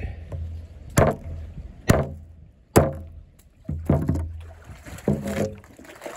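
Hammer pounding a hard, stale loaf of bread on wooden dock boards: three sharp blows about a second apart, then more knocking near the end.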